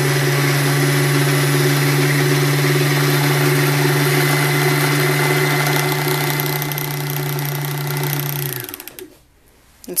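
Baby Lock Xscape BL66 sewing machine's motor running steadily at full speed to wind the bobbin, with the foot pedal pushed all the way down so the thread winds on tight. Near the end it spins down and stops.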